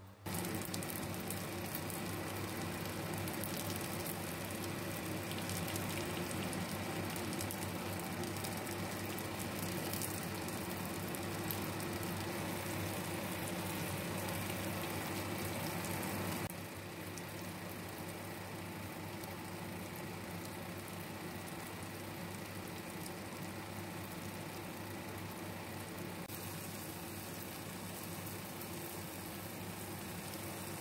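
Egg-coated eggplants for tortang talong sizzling as they fry in oil in a pan: a steady, dense crackle that drops in loudness about halfway through.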